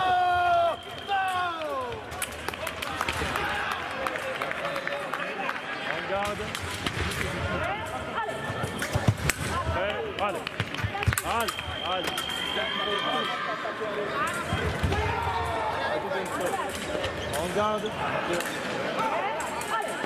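Sound of a sabre fencing bout: a loud shout falling in pitch at the start over the steady electronic beep of the scoring machine registering a touch. Then blade clicks and stamping footwork on the piste against voices in the hall, with a second held beep of nearly two seconds about midway.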